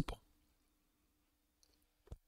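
A man's amplified voice finishing a word, then a pause of near silence: room tone with a faint steady hum and a couple of faint clicks late in the pause.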